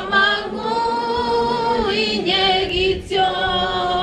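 A mixed choir of young men and women singing a cappella, with long held notes and short breaks between phrases about two and three seconds in.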